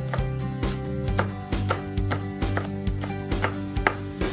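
A chef's knife chopping a green chili pepper on a bamboo cutting board, with sharp blade-on-board strikes about three times a second. Background music plays throughout.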